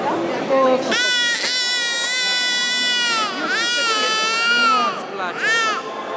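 Infant crying loudly in three wails: a long one of about two seconds starting a second in, a second of about a second and a half, and a short one near the end.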